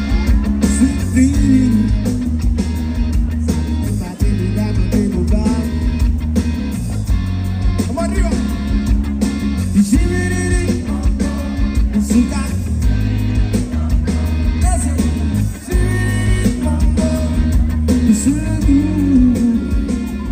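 Live band playing through a PA system: electric guitar, electric bass and drum kit, with a lead vocalist singing into a microphone.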